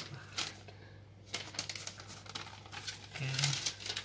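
Sheet of paper rustling and crinkling in the hands in several short bursts as it is handled and put down.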